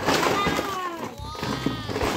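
Mixed plastic toys clattering as they are tipped out of a cardboard box onto the floor.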